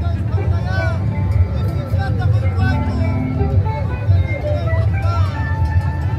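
Festival crowd voices and shouts mixed with Andean carnival music, over a steady low rumble.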